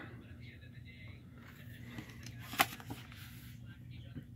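Quiet room sound with a steady low hum, faint handling noise as a card is picked up, and one sharp click about two and a half seconds in.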